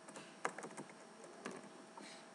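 Computer keyboard typing: a short run of faint key clicks, the loudest about half a second in.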